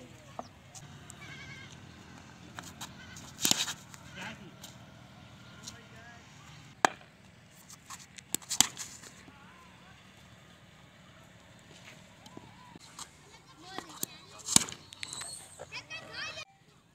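Several sharp knocks of a cricket bat striking a taped tennis ball, with voices calling across an open field between them.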